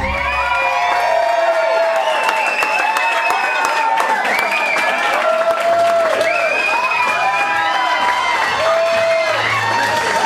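Small audience cheering and whooping, with scattered clapping, over music; a repeating bass line comes in about halfway through.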